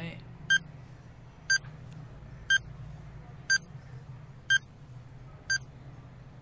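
Countdown-timer sound effect: short electronic beeps, one a second, six in all, counting down the seconds. A faint low steady hum runs beneath.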